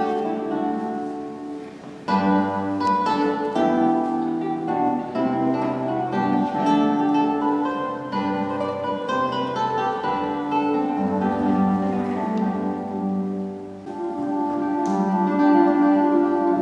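Solo classical guitar played with the fingers: plucked, ringing notes in phrases, the sound dying away twice, about two seconds in and near the end, before the next phrase starts.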